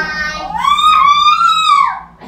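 A young child's high-pitched voice holding one long sung note, rising at first, held for about a second, then falling away near the end.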